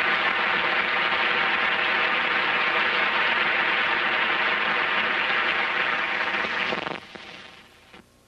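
Audience applauding, steady and loud, then dropping off sharply about seven seconds in and fading out.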